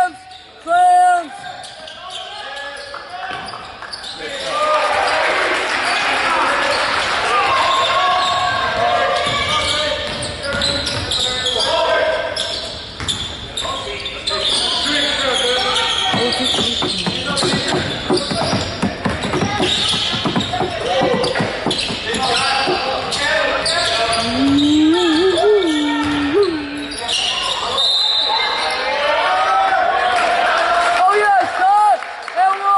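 Basketball being dribbled on a hardwood gym floor during live play, with repeated bounces and footfalls under steady echoing voices of players and spectators.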